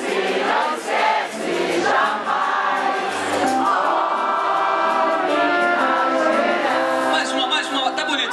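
A live band with a horn section playing while many voices sing together, an audience singing along, with long notes held from about halfway through.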